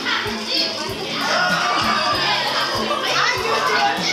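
Children's voices and shouting over background music with a steady beat.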